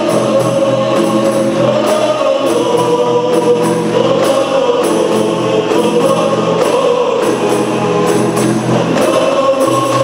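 A group of men singing a qasidah song together in unison, accompanied by rebana frame drums beaten by hand.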